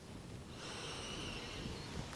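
A soft breath, drawn out for about a second and a half, beginning about half a second in.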